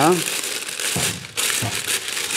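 Clear cellulose film crinkling and rustling as hands press and smooth it into a cast-aluminium ham press mould.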